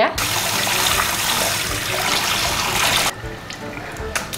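Water running steadily as a face is wetted for washing, stopping suddenly about three seconds in.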